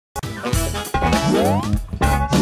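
Channel-intro jingle for an animated logo: bright music that starts suddenly, with a rising sliding note sweeping upward about once a second.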